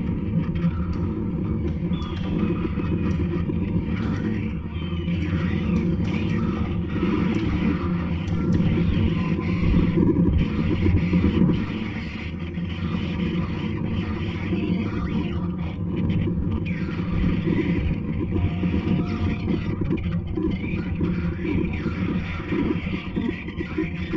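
Experimental electronic music played live from a laptop: a dense, continuous low rumble with a shifting noisy texture above it, swelling louder about a third of the way in.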